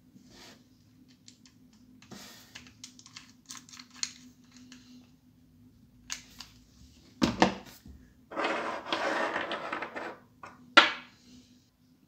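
Hands handling a small 3D-printed plastic thread adapter and an airsoft Glock pistol on a tabletop: scattered light plastic clicks, a knock about seven seconds in, a couple of seconds of scraping, then one sharp click.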